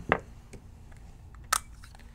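Small handling noises of paintball marker parts as a bolt is pulled out, with one sharp click about one and a half seconds in and a few faint ticks around it.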